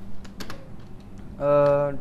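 Computer keyboard typing: a few separate keystroke clicks in the first second as a line of code is edited.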